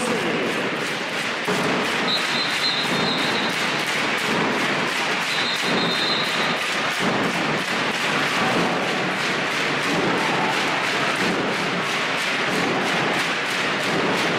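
Handball arena crowd din with a steady, fast rhythmic beating from the stands, about three beats a second. Two short shrill tones sound about two and five seconds in.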